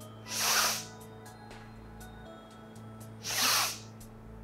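A woman draws two sharp, forceful breaths in through the nose, about three seconds apart: the forced inhalations of Wim Hof breathing.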